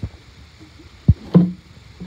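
A few dull, hollow knocks and thumps of a plastic valve box being handled and set down in a dirt hole. The loudest hits come a little over a second in.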